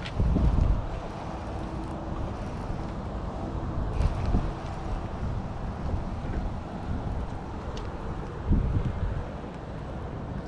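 Wind buffeting the microphone of a body-worn camera, a steady rush with heavy gusts of low rumble just after the start, about four seconds in, and again near nine seconds.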